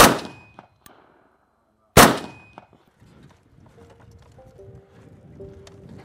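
Two shots from a VZ-58 rifle in 7.62x39, about two seconds apart, each with a short ringing tail. Faint music comes in after about three and a half seconds.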